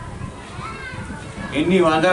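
A short pause in a man's speech over a microphone, filled with faint background voices of the gathering, before his speech resumes near the end.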